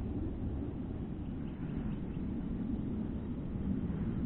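Steady, uneven low rumbling noise of wind on an outdoor camera microphone.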